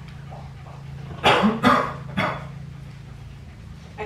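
A dog barking three short times, the first two close together about a second in and the third about half a second later.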